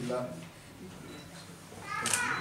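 Voices counting down aloud: "nine" is called at the start and the next number rises right at the end, with quieter room murmur in between. A faint steady high tone runs through the second half.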